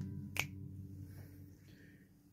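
The last chord of an upright piano dying away, fading to near silence by the end. A single sharp click sounds about half a second in.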